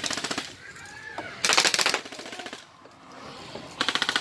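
Airsoft rifles firing rapid full-auto bursts: a short burst at the start, a longer one about a second and a half in, and another beginning near the end.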